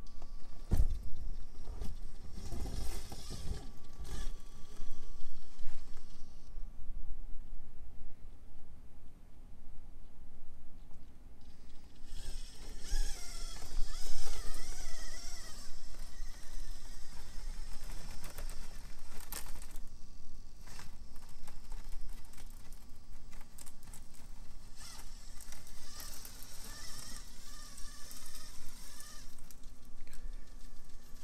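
Traxxas TRX-4M micro crawler with a Furitek Komodo brushless motor crawling over rocks. The motor's whine wavers up and down in pitch with the throttle, loudest in the middle, over scattered clicks and scrapes of the tyres and chassis on the rocks.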